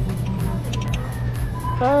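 Claw machine playing its music over a steady low hum while the claw lowers onto the plush toys; a voice exclaims "oh" near the end.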